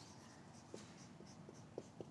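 Faint marker-pen strokes on a whiteboard, a few small taps and ticks of the pen tip over near silence.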